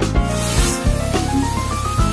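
Background music with a beat, over the grinding noise of a conical grinding stone spun by an electric drill inside a coin's centre hole, grinding the metal out. The grinding is loudest in the first second.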